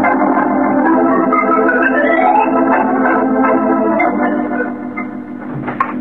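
Organ music bridge from a 1951 radio drama: rising runs over held chords, fading down over the last couple of seconds. A short sharp sound comes just before the end.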